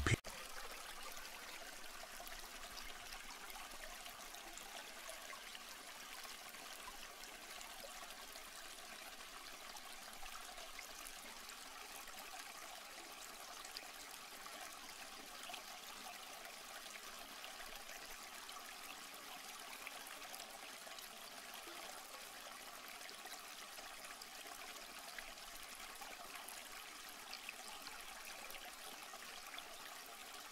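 Faint, steady background hiss with no distinct events, a texture like distant trickling water.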